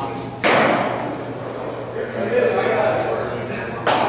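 A pitched baseball smacking into a leather catcher's mitt about half a second in, the sharp pop echoing through a large indoor hall. Near the end comes a second sharp smack of a ball into a glove.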